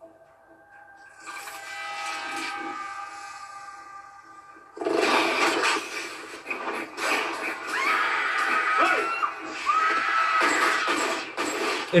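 TV drama soundtrack: after a second of near silence, a quiet sustained music chord builds. About five seconds in, a louder, dense passage of suspense music and action sound effects begins, with several sharp hits and some sliding high sounds.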